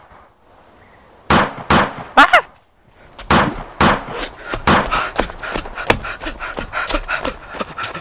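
Pretend gunfire in a finger-pistol shootout: sharp shot sounds in a burst of three about a second in and three more from about three to five seconds in, one with a short voiced cry. After that, a quick run of small clicks from running footsteps and the camera jostling.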